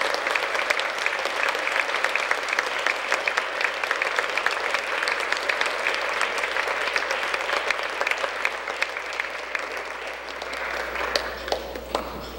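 Audience applauding, a dense, even patter of many hands clapping that tapers off near the end.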